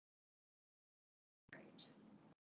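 Near silence: the sound is cut to nothing, then a faint short sound with a sharp start comes in about one and a half seconds in.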